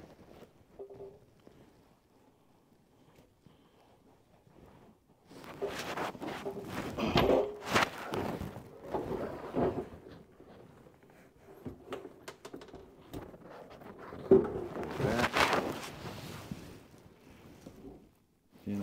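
Scattered knocks, thunks and rustling of hands working on plastic sink drain pipes and fittings in a cabinet. They come in two spells a few seconds apart, after a few quiet seconds.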